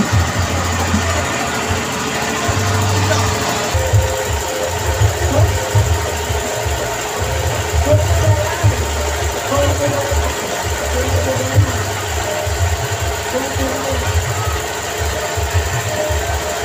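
Loud music with heavy, pulsing bass from a street sound system, mixed with the chatter of a crowd.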